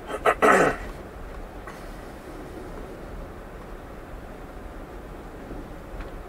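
A man clears his throat: a short, loud, rasping burst that falls in pitch, in the first second. After it comes the steady low hum of road noise inside an electric Tesla's cabin rolling slowly over snow.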